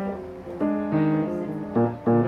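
Grand piano played solo in a jazz style: sustained chords over low bass notes, a new chord struck about every half second.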